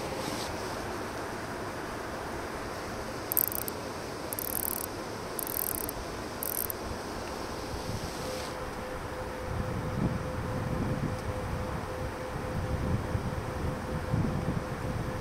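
Steady outdoor background noise with a faint constant hum. Four short, high hissy bursts come in quick succession in the middle, and wind buffets the microphone in the second half.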